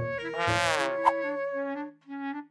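Background music with a short buzzy sound effect that glides down in pitch about half a second in, followed by a click about a second in. The music then holds a few notes and cuts off near the end.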